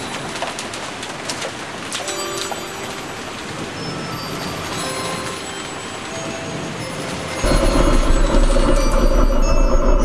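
A steady noisy background with scattered short chirps and tones, then loud music with a heavy bass cuts in suddenly about seven seconds in.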